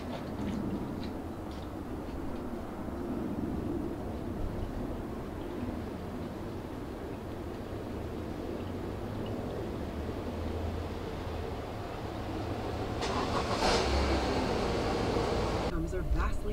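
Car engine idling steadily as it warms up on a cold night, heard from outside the car. A louder rush of noise comes in about thirteen seconds in and fades before the end.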